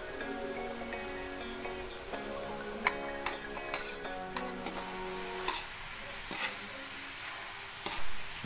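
Ox tripe frying in a wok with a steady sizzle while a metal spatula stirs it, knocking and scraping against the pan several times around the middle. Soft background music plays underneath.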